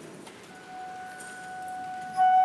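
A church organ sounds one soft, steady held note starting about half a second in, the first note of the closing music after the dismissal.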